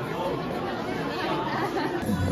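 Background chatter of many people talking at once in a busy indoor space, with no single voice standing out.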